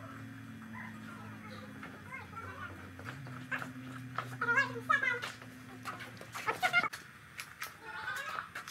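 An animal's quavering call, lasting about a second near the middle, over a steady low hum. A shorter call follows shortly after, with scattered knocks.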